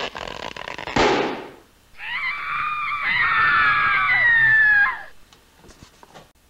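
A rushing noise that swells sharply about a second in, then a high, wavering, scream-like cry lasting about three seconds, its pitch slowly falling before it stops.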